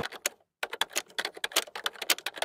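Rapid run of sharp typing clicks, about ten a second, with a brief pause half a second in: a keyboard-typing sound effect over a title card.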